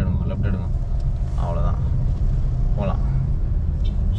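Steady low rumble of a car's engine and road noise heard from inside the cabin as the car creeps through traffic.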